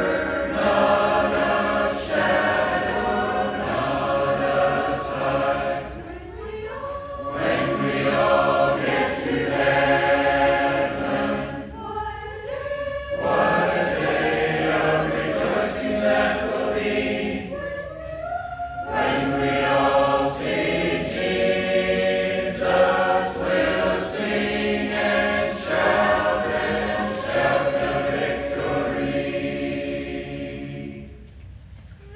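A congregation singing a hymn a cappella in harmony, held notes in long phrases with short breaks between them, fading out at the end.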